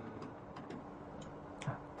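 Quiet room tone with a few faint, irregular ticks, the last one, a little before the end, slightly louder.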